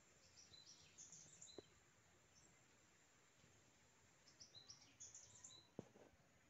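Near silence with faint, high-pitched bird chirps in two short bursts, one near the start and one near the end, and a couple of soft clicks.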